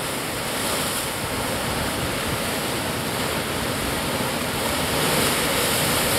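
Sea surf breaking and washing over a rocky shore, a steady rush of water that swells a little toward the end.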